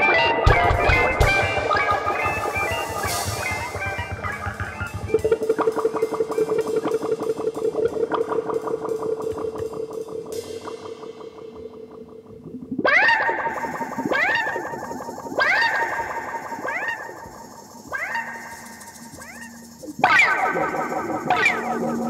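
Instrumental psychedelic rock with drums and electric guitar winds down: after about five seconds only a single held guitar note remains, pulsing rapidly and fading out. From about the middle on, a series of rising, swooping sounds follows, roughly one a second.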